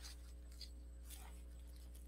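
Faint, brief rustles of small collage pieces being handled and laid on paper, three soft scratchy touches within the first second and a half, over a low steady hum.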